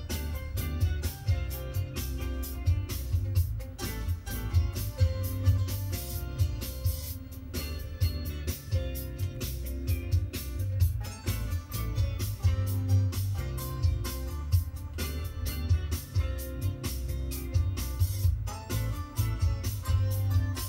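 Background music with a steady beat and a heavy bass line.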